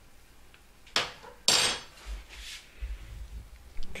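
A metal spoon knocks once against a frying pan about a second in, then scrapes briefly across it, followed by fainter rubbing and a light click near the end.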